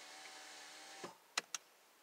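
Faint steady hum with a few even tones that cuts off suddenly about a second in, followed by two short clicks.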